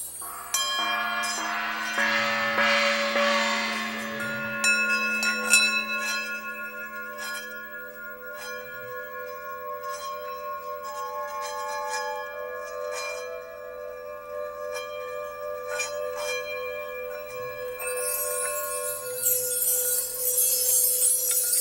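Struck bells and chimes open a piece: a loud strike about half a second in rings out with many overtones and slowly dies away. Scattered lighter strikes follow over long, steady ringing tones.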